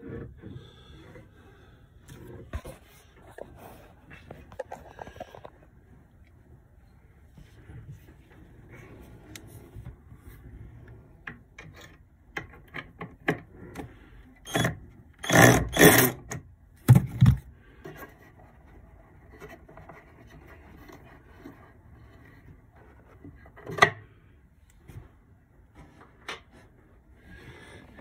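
Screwdriver working screws out of a wooden batten that holds a boat's battery in its box, with scraping and small clicks. A cluster of loud knocks comes about halfway through, and a single sharp knock a little later.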